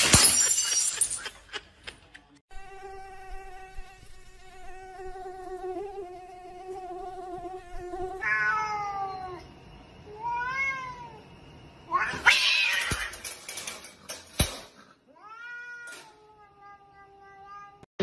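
Domestic cats meowing and yowling: one long drawn-out yowl held at a steady pitch for about five seconds, then several shorter meows that fall and arch in pitch. A loud, harsh noisy burst comes about twelve seconds in, followed by one more meow that trails off near the end.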